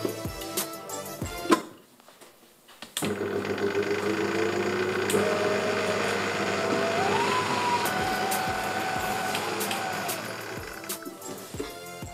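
Electric stand mixer with a paddle attachment, beating cream cheese and butter for frosting. It starts about three seconds in and runs steadily at low-to-medium speed, its motor pitch rising partway through as the speed is adjusted, then fades near the end. Background music with a beat plays throughout.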